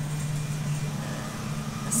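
Grocery-store room tone: a steady low hum over an even background noise, with no distinct event.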